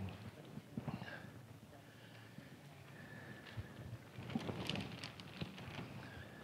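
Faint crinkling of a plastic bag and scattered light taps as gloved hands reach into it for food, with a denser cluster of crinkles a little past the middle.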